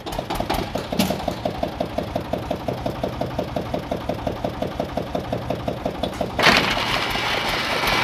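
The engine of a construction hoist winch starts and runs with an even beat of about six pulses a second. A little over six seconds in, a louder rushing, clattering noise joins it.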